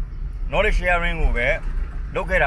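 A man talking in Burmese, the recogniser writing none of it, over the low steady rumble inside a car cabin.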